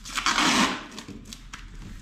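Clear protective plastic film being peeled off a new fridge: a short crackling rustle in the first second, then quieter crackles as it comes away.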